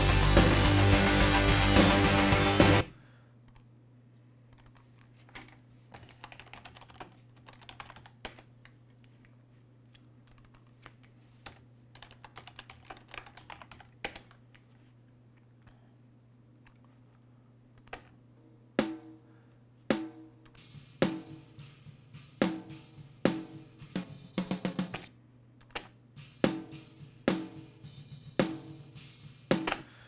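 Loud playback of a multitrack rock drum recording that cuts off about three seconds in. A long quiet stretch of faint mouse and keyboard clicks over a steady low hum follows. From about two-thirds of the way through comes a steady run of snare drum hits, with the recorded snare and a layered sample snare sounding together.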